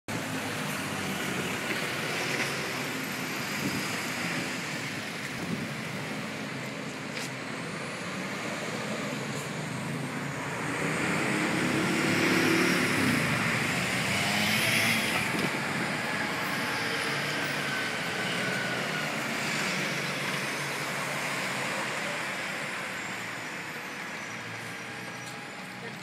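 Steady city road traffic, cars and heavier vehicles passing, with a louder vehicle going by about halfway through.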